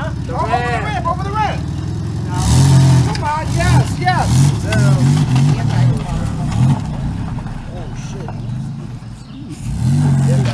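Minivan engine revving hard as the van is driven away, the revs surging from about two seconds in and easing off later on. People shout and laugh over it near the start.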